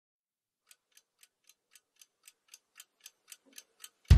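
Clock ticking fast and evenly, about four ticks a second, fading in from near silence and growing steadily louder.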